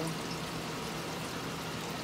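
Water running steadily through an aquaponic grow-bed system, a continuous pouring trickle with a low steady hum underneath.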